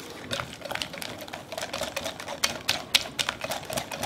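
Wire whisk beating melted almond bark coating in a glass batter bowl, its wires clicking rapidly and irregularly against the glass.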